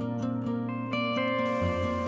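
Soft instrumental background music of plucked strings, held notes changing every half second or so. A faint hiss joins the music near the end.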